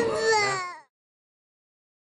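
A young child's drawn-out, wavering crying wail that fades and cuts off under a second in.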